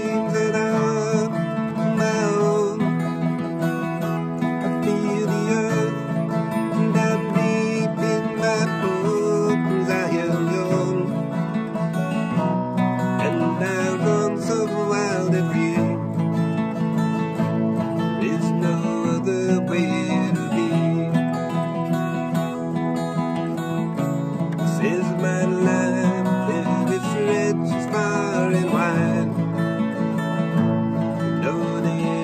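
Two acoustic guitars strummed together, playing a song.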